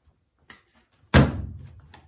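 A slab of wet clay slammed flat onto a wooden worktable, flattening it out for the base of a pot: one loud slam a little over a second in, after a faint tap.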